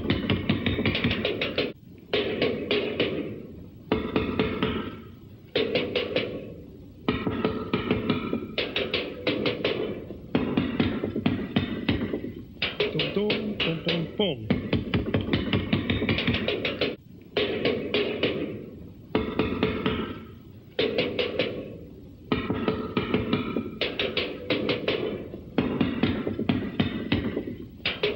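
Drum kit with a bass drum and tom-toms played fast with sticks, in runs of rapid hits. Short breaks come roughly every two seconds.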